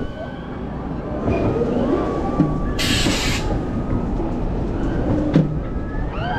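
Bobsled roller coaster car running along its trough: a steady rumble of the wheels on the track, with a short loud hiss about three seconds in.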